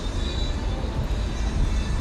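Outdoor urban background noise: a low, uneven rumble with no distinct event standing out.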